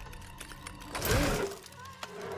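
Film sound effects of a dinosaur's teeth gripping a glass sphere: rapid fine clicking and creaking of the glass, with a louder burst of sound with a rising and falling pitch about a second in.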